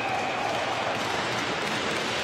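Ice hockey arena crowd noise with applause, an even, steady din just after a goal.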